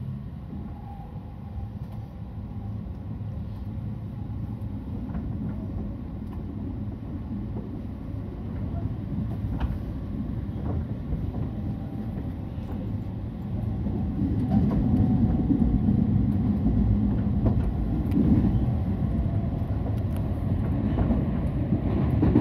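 Meitetsu 3100-series electric train running, heard from inside the car: a steady low rumble of wheels and motors that grows louder about two-thirds of the way through as the train runs into the tunnel.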